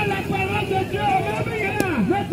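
Several voices talking and calling at once, with traffic in the background.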